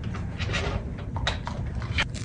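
A husky vocalizing at a shop counter while being handed a treat.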